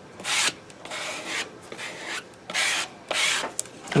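Plastic squeegee scraping across a silkscreen mesh, pushing thick copper enamel paste through onto glass, in about five short strokes.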